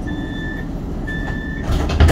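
Light rail tram's door-closing warning beeping over the rumble of the tram: two high half-second beeps about a second apart. Near the end a loud rush of noise as the doors slide shut.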